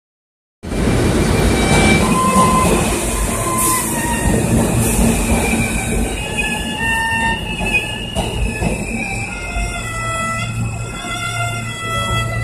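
Subway train noise in the station with an erhu (Chinese two-string fiddle) playing a bowed melody over it. The train noise is loudest in the first half and eases off, and the erhu's held and sliding notes come through more clearly after about six seconds.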